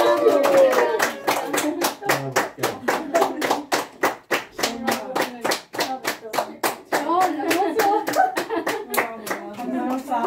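Hands clapping in a fast, steady rhythm, about five claps a second, with voices over it.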